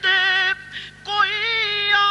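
A single voice chanting devotional verse unaccompanied in long held notes with a slight waver: one note at the start, a short break, then a second long note a little after one second in. A steady low electrical hum runs under it.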